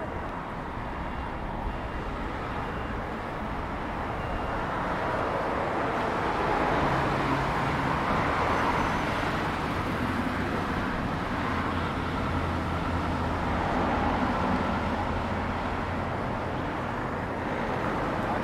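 Busy city road traffic, with cars and buses passing close by in a steady rush of engines and tyres that swells past the middle. A low engine hum from a passing vehicle runs through the second half.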